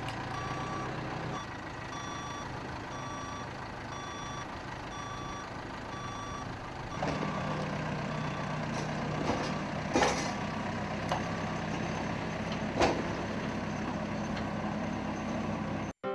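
A telehandler's reversing alarm beeps steadily about every 0.7 s over its running diesel engine while it tows a small locomotive off a ramp trailer. About seven seconds in the beeping stops and a stronger, steady engine note takes over. There are a couple of sharp metal clanks near the middle and later on.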